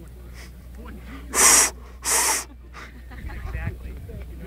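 Two short, loud breaths close to the microphone, about half a second apart, over a low steady rumble.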